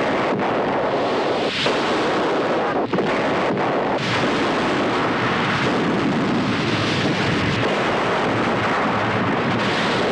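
Steady loud rush of water from the stunt's exploding water tanks pouring down over the burning set, with a few short sharp cracks in the first few seconds.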